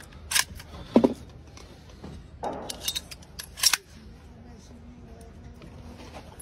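A hammer tacker being handled, giving a few scattered sharp clicks and knocks, with a brief scuffing noise near the middle.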